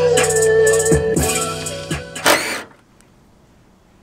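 Music with a drum beat playing through a pickup truck's stereo speakers, heard in the cab during a sound test; it cuts off suddenly about two-thirds of the way through, leaving faint background noise.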